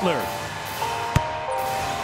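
A single sharp bounce of a basketball on the hardwood court about halfway through, over steady held notes of background music.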